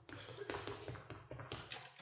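Faint, irregular taps and clicks, about a dozen in two seconds, over a low steady hum: handling noise as a performer moves and reaches for a prop.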